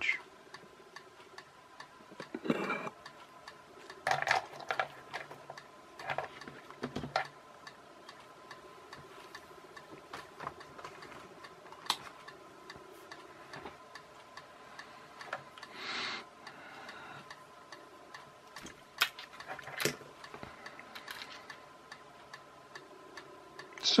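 Scattered light clicks and knocks of a small LED circuit board and other small items being handled and set down on a cluttered workbench, over a faint steady hum.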